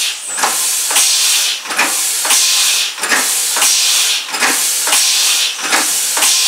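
Homemade compressed-air piston engine running at about 45 rpm, air hissing from its valves in regular puffs, about three every two seconds, each starting with a click.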